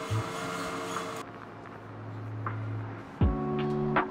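Background music with held notes. The treble drops away about a second in, and a deep bass note lands about three seconds in.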